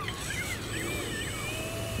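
Small electric RC airplane's brushless motor and propeller, running on a 3S pack, giving a high whine that rises and falls in pitch as the plane banks and climbs.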